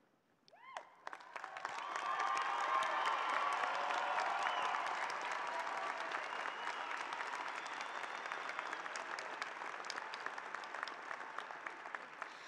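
A large arena audience applauding, the clapping building over the first two seconds and easing slightly toward the end, with a few voices calling out in it.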